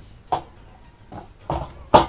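Gas-cartridge compartment cover of a Magnum 138A portable gas stove being worked open by hand: a few short knocks and clicks, the loudest a sharp click near the end as the cover comes open.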